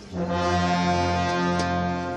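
A Spanish procession wind band playing one long held chord with heavy low brass. It comes in just after a brief break in the music.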